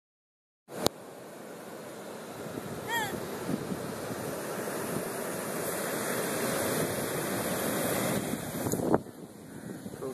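Surf breaking on a sandy beach: a steady rushing that builds slowly, with wind buffeting the phone's microphone. Handling clicks sound at the start and again about nine seconds in, after which it is quieter.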